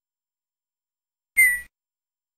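Tux Paint's sound effect as a plant stamp is clicked onto the canvas: one brief whistle-like beep, its tone falling slightly, about a second and a half in.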